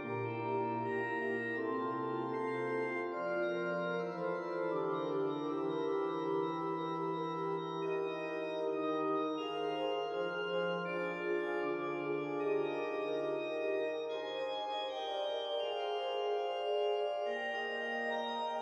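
Organ playing slow, sustained chords over held bass notes that change every few seconds; the lowest line drops out near the end.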